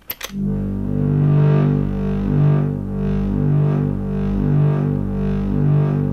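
Korg Monologue synthesizer holding a low, distorted drone through a wave folder and a grind distortion. Its tone swells and brightens about once a second as the automated wave-folder drive and distortion mix rise and fall.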